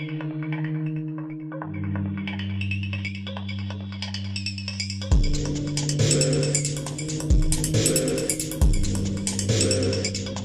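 Electronic soundtrack music: sustained low chords, joined about five seconds in by a beat of deep, falling drum hits and fast clicking percussion.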